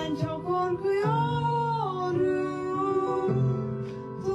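A girl and a woman singing a slow pop duet together in a home rehearsal, holding long notes, with a light instrumental accompaniment.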